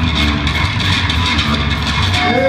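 Live metal band playing loud, with distorted electric guitar and bass guitar to the fore.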